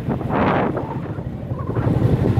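Motorcycle engine running while riding, with wind buffeting the microphone; a louder rush of wind comes about half a second in.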